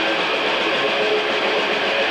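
Death metal band playing live: distorted electric guitars, bass and drums in a loud, steady, saturated wash of sound.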